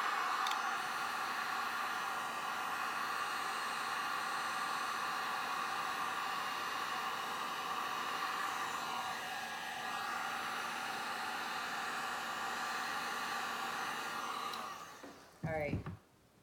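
Electric heat gun running steadily, blowing hot air onto wet resin to push a strip of white resin downwards; it shuts off near the end.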